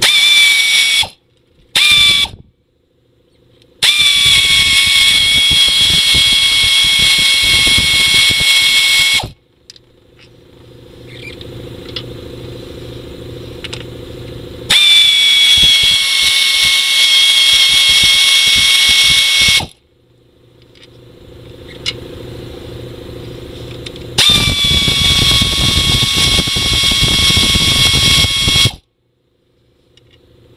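Pneumatic air ratchet spinning out intake-manifold bolts in runs, with a high steady whine that settles slightly lower as each run starts and cuts off sharply. There are two brief bursts at first, then three runs of about five seconds each, with a quieter low hum in the pauses.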